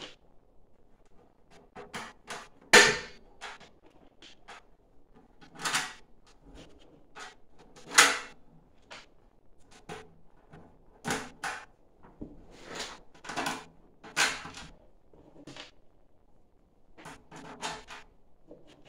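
Irregular metallic clicks and knocks of small screws and nuts being handled and fitted by hand around the rim of two metal pot lids, the sharpest about three and eight seconds in.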